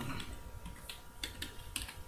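Typing on a computer keyboard: a quick run of separate keystrokes as a word is typed in.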